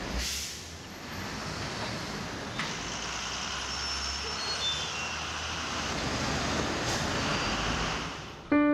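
City street traffic noise: a steady hum of passing vehicles, with a short hiss just after the start.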